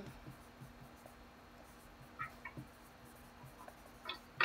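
Faint scratching and tapping of a dry-erase marker tip writing on a whiteboard, with a couple of short squeaks a little past the middle.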